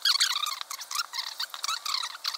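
Sped-up audio of fast-forwarded footage: a voice and handling noises raised to a high, squeaky chipmunk-like chatter. It starts abruptly, with no low sound beneath it.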